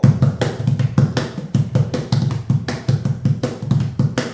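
A homemade plywood cajon with a snare spring inside, played by hand in a fast, steady rhythm that mixes deep bass strokes with sharper slaps on its front striking face.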